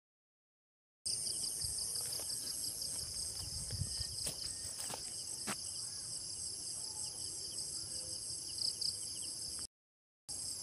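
Dusk chorus of insects: a dense, steady high-pitched trilling with a fast pulsing beat, cutting in about a second in and dropping out briefly just before the end. A few faint clicks sound over it.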